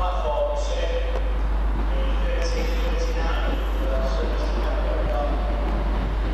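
Northern Rail Class 156 Sprinter diesel multiple unit approaching at low speed: steady engine and running noise over a low rumble, with faint wavering tones on top.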